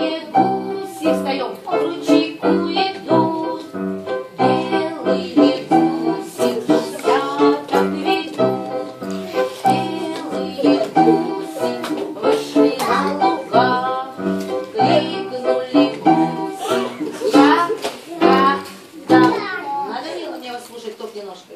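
A group of young children singing a song together over rhythmic instrumental music.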